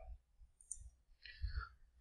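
A few faint, brief clicks and taps in near quiet, the small handling sounds of circuit boards being moved on a tabletop.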